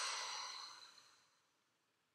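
A person's long, breathy sighing exhale, strongest at the start and fading away over about a second and a half.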